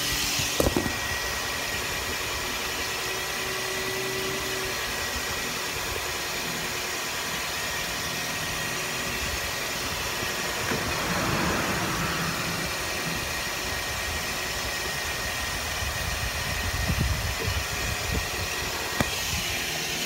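Car engine idling steadily.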